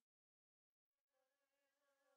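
Near silence: the digital silence between two songs.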